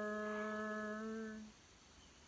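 A male voice chanting the Islamic call to prayer (azan) holds one long, steady note, which fades out about a second and a half in and leaves faint hiss.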